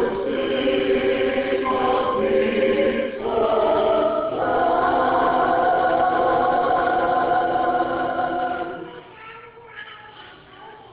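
Choir of men and women singing together, ending on one long held chord that stops about nine seconds in.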